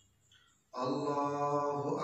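A man chanting an Arabic prayer phrase aloud in a long, level-pitched voice, starting after a short pause about two-thirds of a second in.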